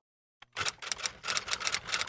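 Typewriter key-clicking sound effect: a quick, even run of sharp clicks, about six a second, starting about half a second in after a dead-silent cut.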